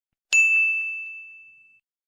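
A single bright bell ding, the subscribe-and-notification-bell sound effect, striking about a third of a second in and fading away over about a second and a half.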